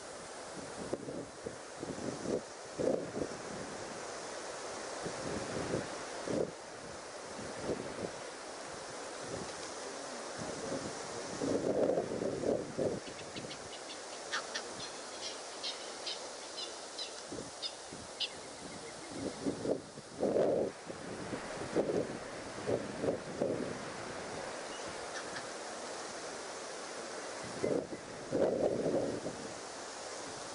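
Outdoor ambience at a waterhole: a steady hiss with irregular short gusts of wind buffeting the microphone. About halfway through comes a run of quick, high ticking calls lasting a few seconds, about four a second.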